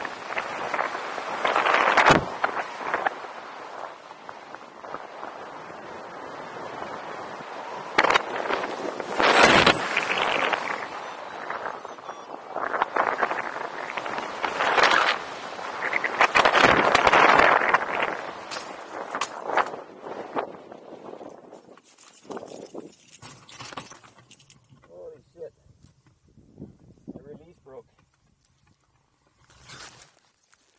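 Airflow rushing over the wing-mounted camera's microphone as a hang glider flies low, swelling and easing in surges. About 22 s in it dies away as the glider slows and lands, leaving only faint scattered sounds.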